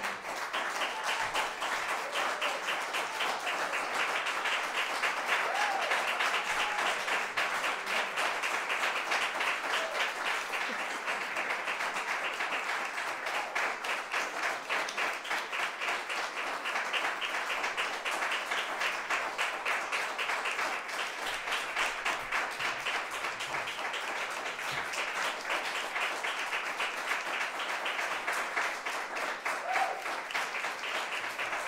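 Audience applauding: a dense, steady patter of hand claps.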